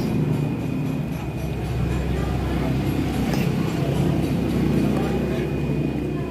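Restaurant background: a steady low rumble with indistinct voices and music behind it.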